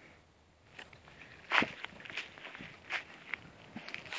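Footsteps: a handful of irregular steps, with the loudest about a second and a half in.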